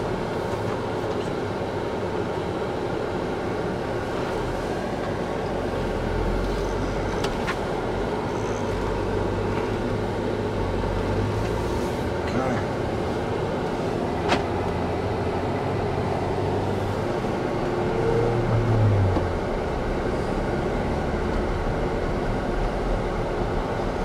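Ford Bronco driving slowly, heard inside its soft-top cabin: steady engine and road noise with a low hum. There is a single click about 14 seconds in, and the engine's hum swells briefly a little after 18 seconds.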